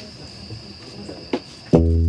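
Crickets chirping steadily as a high, thin drone, then near the end a loud guitar chord is strummed as the band begins the song.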